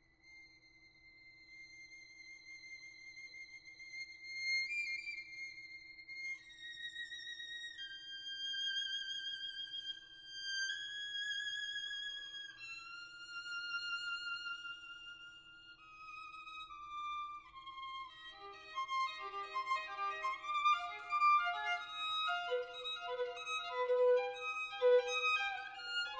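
Solo violin entering on a very high, quiet sustained note with vibrato, then descending slowly through long held notes. From about two thirds of the way through it plays faster, lower passages with several notes sounding together, growing louder.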